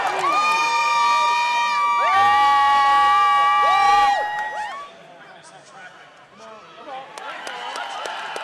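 Several young women screaming long, high, held cheers, their voices overlapping for about four and a half seconds; then it drops to low background crowd noise.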